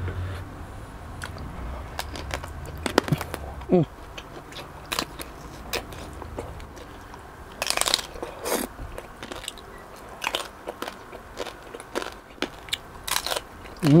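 Crispy lechon belly roll being bitten and chewed close to the microphone: a string of sharp crunches of the crackling pork skin, loudest about eight seconds in, with a short hummed "mm" in between.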